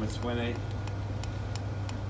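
A low steady hum with several faint clicks as the CD player's track-skip button on a Yamaha AST-C10 boombox is pressed repeatedly, skipping tracks.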